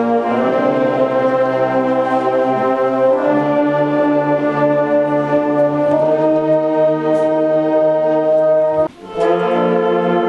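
A school beginning concert band, led by brass, playing slow held chords that change to new pitches every few seconds. A brief gap comes about nine seconds in before the next chord starts.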